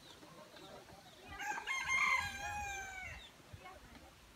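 A rooster crowing once: a single long call of about two seconds that starts a little over a second in and sags in pitch at its end.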